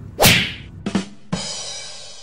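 Edited transition sound effect: a loud falling whoosh about a quarter second in, then drum hits with cymbals starting about a second in.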